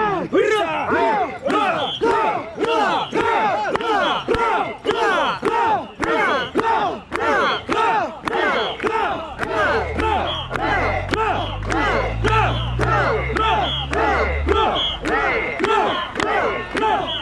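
A crowd of mikoshi bearers shouting a rhythmic carrying chant in unison, about two shouts a second, keeping step as they carry a heavy portable shrine. A low rumble joins for several seconds in the second half.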